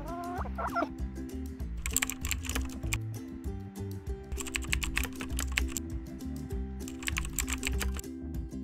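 A brief chicken clucking sound effect in the first second, then three bursts of rapid computer-keyboard typing sound effects as text appears, over steady background music.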